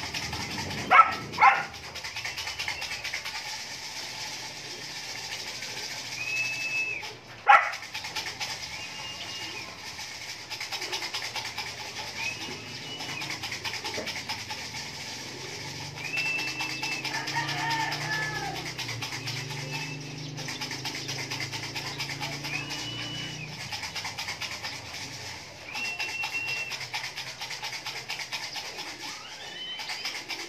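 Domestic pigeons at a loft: sharp wing claps as birds take off, twice about a second in and once more about seven seconds in, and low cooing in the middle of the stretch. A short, even high-pitched call repeats every few seconds throughout.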